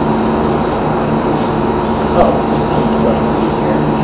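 A steady mechanical motor hum with a low drone throughout; a person says a short "oh" about two seconds in.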